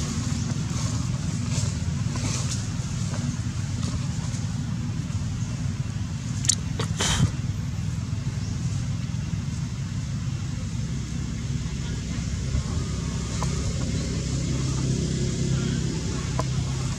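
Steady low rumble of a motor vehicle engine running, with two sharp clicks about six and seven seconds in.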